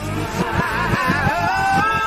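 A song played backwards: a reversed beat under a wavering, pitched vocal-like line that slides up and down.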